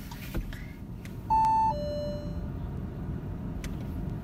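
Steady low rumble inside a running car's cabin. About a second in, a two-note electronic chime sounds: a short loud high note, then a lower, softer note.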